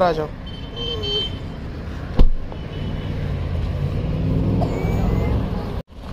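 A car door slammed shut once, about two seconds in, then a low car engine rumble that swells and cuts off suddenly just before the end.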